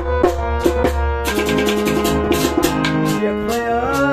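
Instrumental passage of a Kashmiri song: sustained harmonium chords over drum and percussion strokes. A male voice starts singing near the end.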